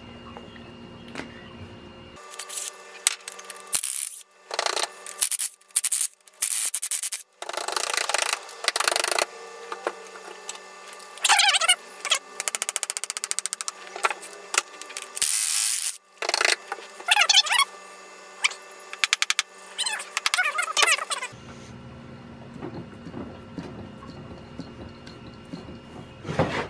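Hand ratchet wrench clicking in repeated bursts as it loosens rusted head nuts on a Ford flathead V8, with a few short squeaks from the nuts turning on their studs. The nuts are slowly working loose after a soak in penetrating oil.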